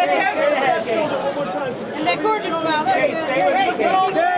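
Overlapping chatter of several voices: press photographers calling out at once, none clearly heard.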